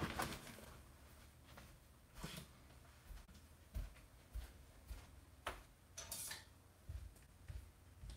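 Faint, scattered knocks and thumps over a low steady hum: someone moving about and rummaging out of sight, well away from the microphone.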